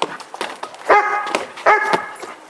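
A border collie barks twice, two short loud barks about a second in and near the end. A few short sharp knocks come before the barks.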